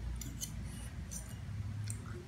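Metal spoon and fork clinking and scraping against a plate while scooping rice: a few light, sharp clinks spread through the two seconds, over a low steady hum.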